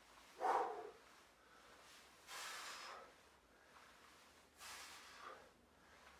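A man breathing out hard in three short puffs about two seconds apart, one with each rep of a dead bug ab exercise. The first puff is the loudest.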